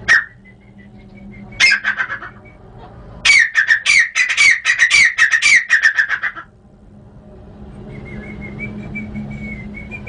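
Grey francolin (teetar) calling: one sharp note, a short burst, then a loud rapid run of repeated notes, about five a second, lasting about three seconds. A faint thin whistle follows near the end.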